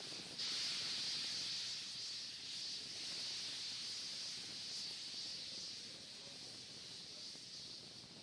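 Steady hiss of a Falcon 9 rocket venting chilled gas overboard from its liquid-oxygen tank to hold tank pressure, starting suddenly about half a second in and easing slightly toward the end.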